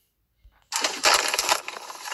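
A loud crackling, rustling noise full of small clicks that starts suddenly a little under a second in, after a brief silence.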